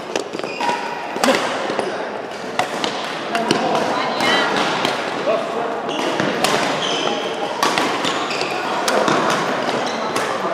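Badminton rackets striking a shuttlecock: a series of sharp, echoing hits at irregular intervals, with voices in the background.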